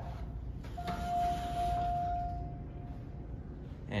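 Elevator hall chime: a single electronic tone held for about two seconds, then fading away.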